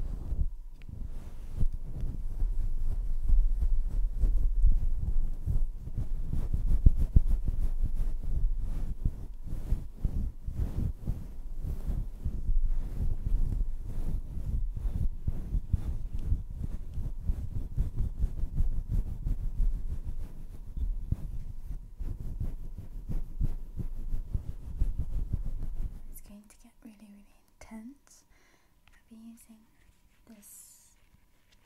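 Fingers and a smooth gua sha–style massaging tool rubbing and stroking a fluffy furred microphone cover up close, a dense, scratchy, muffled rustle of many quick strokes. It stops about four seconds before the end.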